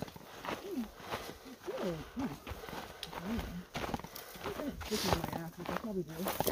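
Footsteps and the hard tip of a trekking pole clicking irregularly on a dirt trail, under a person's quiet, indistinct voice.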